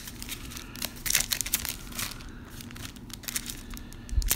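Foil wrappers of 2016 Diamond Kings trading-card packs crinkling and rustling in irregular crackles as the packs are handled and shuffled by hand, busiest about a second in.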